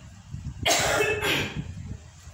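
A woman coughing, loud and breathy, about two-thirds of a second in: a longer cough followed at once by a shorter one.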